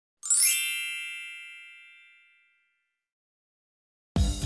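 A bright chime sound effect: a quick rising sparkle into a single ringing ding that fades out over about two seconds.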